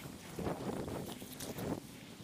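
Wind buffeting the microphone, with two louder gusts about a second apart.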